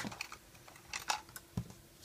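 A few faint, isolated clicks and taps, the clearest about a second in, from crochet hooks and rubber loom bands being handled.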